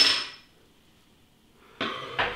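Metallic clink of a crown cap and steel bottle opener just after the cap is prised off a glass beer bottle, ringing out and fading within about half a second. Near quiet follows, then a soft handling noise near the end.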